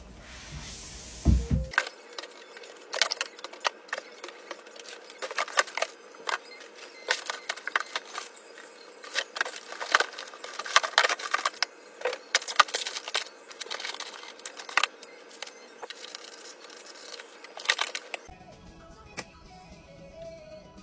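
Packing paper crinkling and plastic bottles knocking against each other in a cardboard box, a fast, irregular run of sharp clicks and rustles, over faint background music.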